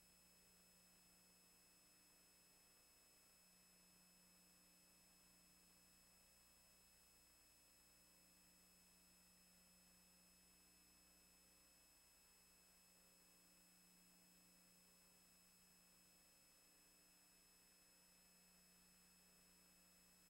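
Near silence: only a faint steady electrical hum and the recording's background noise.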